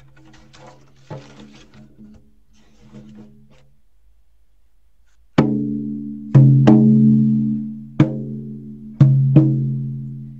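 A large frame drum struck six times in an uneven, heartbeat-like pattern, some strokes in pairs. Each stroke gives a deep, ringing boom that fades over about a second. Before the first stroke, about halfway in, there are a few seconds of faint handling sounds.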